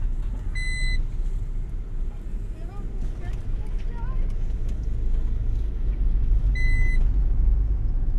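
Steady low road and engine rumble inside the cabin of a moving car. Two short, high electronic beeps sound over it, one about half a second in and one near the end, about six seconds apart.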